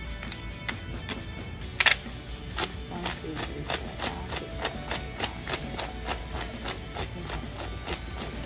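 Background music, over which a cashier counts out paper bills, each bill laid down with a crisp snap about three times a second from a few seconds in.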